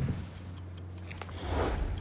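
Light, scattered ticks and soft movement noise over a steady low hum, with a brief rustle near the end.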